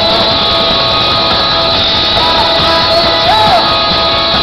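Live rock band playing loudly, led by a strummed electric guitar.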